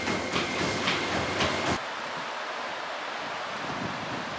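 Motorised treadmill running, a steady rumble and whine, with a Rottweiler's paws striking the belt about twice a second. It cuts off abruptly about two seconds in, leaving a quieter outdoor hiss.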